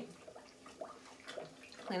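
Faint wet squelching of clay and water under hands and a sponge on a spinning potter's wheel, over a faint steady hum.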